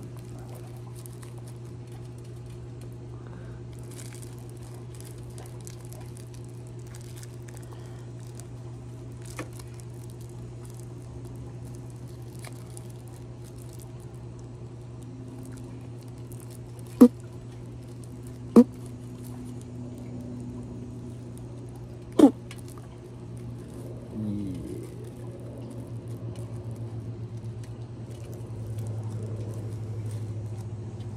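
A joint being rolled by hand: faint crinkling and light ticking of rolling paper between the fingers, over a steady low hum. Three sharp clicks come a little past the middle, and the hum grows louder and pulses near the end.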